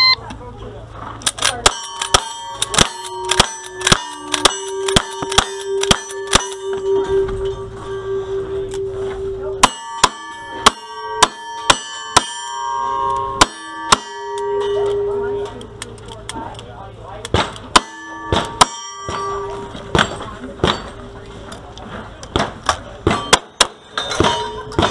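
A short electronic shot-timer beep, then strings of rapid gunshots at steel targets. Many hits leave a ringing clang on the steel. There are pauses between strings as guns are changed, with revolver fire in the middle and shotgun shots near the end.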